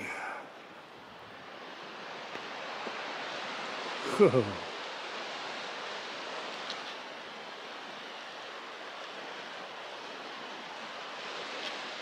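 Steady rushing of a river running over rocks in the canyon below; it swells a little over the first couple of seconds, then holds even.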